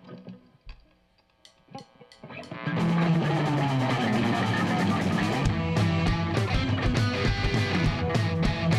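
A few faint clicks in a near-quiet pause, then about three seconds in a live rock band starts playing loudly: electric guitars, bass guitar and drum kit, with steady kick drum beats coming through toward the end.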